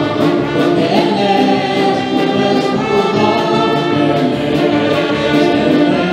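Live Spanish-language worship song: several women's voices singing together into microphones over band accompaniment with a steady beat.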